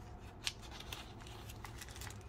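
Small clear plastic bag being handled and opened by hand: light crinkles and clicks, with one sharper click about half a second in.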